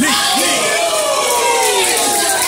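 Fight crowd cheering and shouting, many voices overlapping at a steady, loud level.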